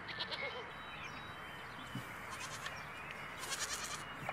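Goats bleating, a few short calls spread over a few seconds, over a steady outdoor hiss.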